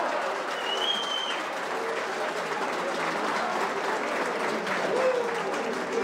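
Applause and scattered shouts from the stands greeting a goal, with a short high whistle about a second in.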